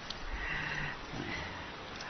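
A pause in a man's spoken talk: steady background hiss with two faint, short, low voice sounds, the first about half a second in and the second just past the middle.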